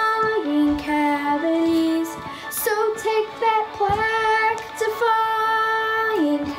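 Musical-theatre song with a child singing long held notes that step between pitches over a backing track.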